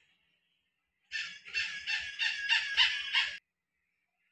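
A bird calling: a loud, rapid run of about seven notes in just over two seconds, starting about a second in and cutting off suddenly.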